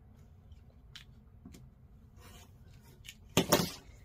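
Faint sounds of a rotary cutter and acrylic quilting ruler on a cutting mat as a fabric strip is trimmed, a few light clicks, then a short, louder clatter near the end as the tools are put down.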